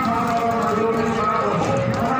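Several voices singing together in sustained, overlapping notes, with a rhythmic knocking beat underneath.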